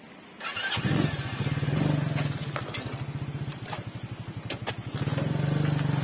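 A small motor scooter's engine starts about half a second in and runs with a quick, even putter. It swells louder for a second or so, drops back in the middle, and rises again near the end.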